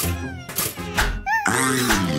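Cartoon soundtrack: music with quick comic sound effects and squeaky, pitch-bending creature calls, one short rising-and-falling chirp about a second in, then a dense noisy burst near the end.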